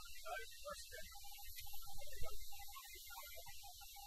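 Steady low hum and hiss of the spacecraft cabin's background noise, the constant air circulation heard aboard the orbiter, with a brief slightly louder moment about two seconds in.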